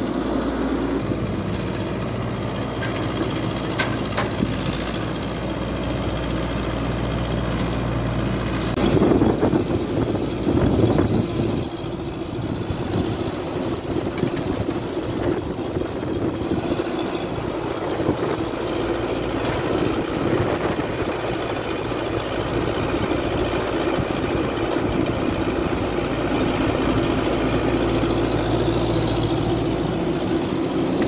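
Diesel engines of a wheeled excavator and a dump truck running steadily while the excavator swings and dumps garbage into the truck bed. There is a louder stretch about nine to eleven seconds in.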